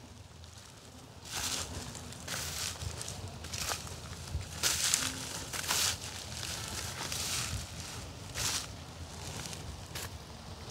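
Footsteps crunching through dry rice straw and stubble, an irregular series of short rustling crunches about one or two a second.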